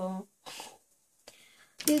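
A woman's voice: a drawn-out, level-pitched vocal sound that ends just after the start, a short breath out about half a second in, then quiet until she starts speaking near the end.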